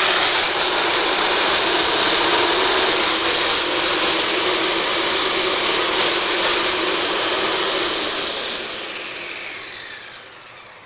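Corded electric lawn edger running with its blade cutting the turf along a patio edge, a loud steady whir. Near the end it is switched off and winds down, its pitch falling as it fades.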